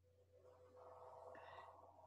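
Near silence in a pause between words on a video call: a faint steady low hum, with a faint brief tone in the second half.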